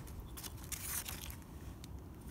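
Faint handling noise, a few light clicks and scrapes as the DEF tank's rubber seal and plastic lock ring are moved by hand, over a low steady background hum.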